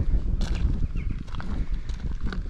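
Footsteps on a loose stony gravel path, irregular steps at walking pace, over a steady low rumble of wind on the microphone.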